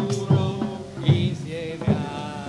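A group singing a simple song to live accompaniment, with a drum struck three times, about once a second.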